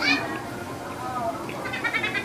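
Children's high-pitched squeals and cries in a busy crowd: one loud falling squeal at the start and a quick string of short cries near the end.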